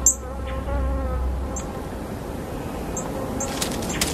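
An insect buzzing at a steady pitch, fading out over the first two seconds, over an even outdoor hiss. Short high chirps come every second or so.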